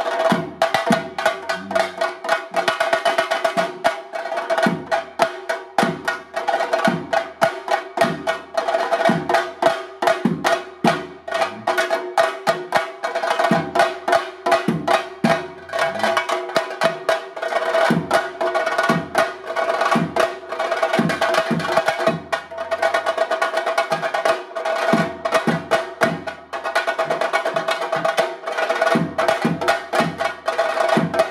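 A group of chenda drums beaten with sticks in a fast, dense, unbroken rhythm of sharp strokes.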